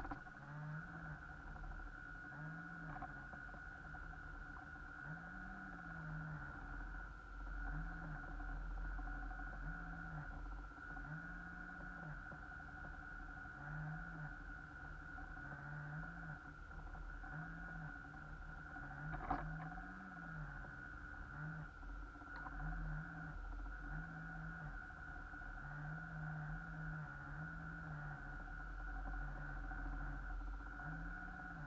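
Small electric motors of a radio-controlled boat run in short throttle bursts, each one rising and falling in pitch, over a steady high whine. A single sharp knock comes about two-thirds of the way through.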